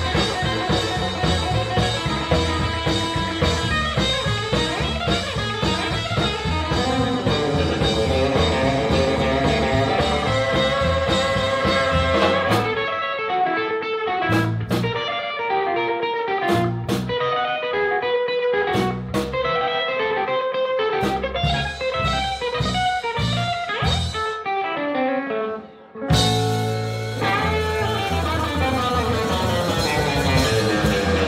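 Live blues band playing an instrumental passage: a Telecaster-style electric guitar leads over a drum kit and rhythm section. About twelve seconds in, the full backing drops to sparse stop-time hits while the guitar carries on; it cuts out briefly near the end, then the whole band comes back in.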